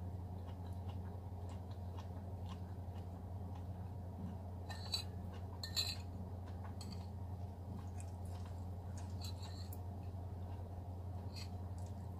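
Metal cutlery clinking and scraping against a ceramic bowl, with soft chewing, over a steady low hum; two sharper clinks come about five and six seconds in.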